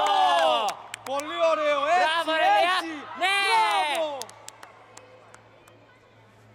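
A voice in the hall shouting three long, loud calls that rise and fall in pitch, with a few sharp claps or knocks between them; the shouting ends about four seconds in.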